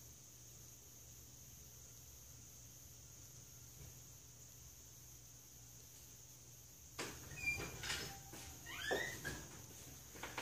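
Near silence with a faint steady hum for about seven seconds. Then a run of sharp clicks and knocks, with a short squeak that rises in pitch about nine seconds in.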